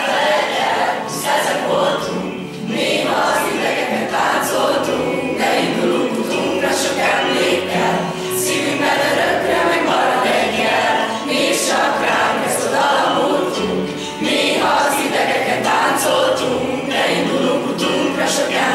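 A class of teenage students singing a song together as a group, reading from song sheets.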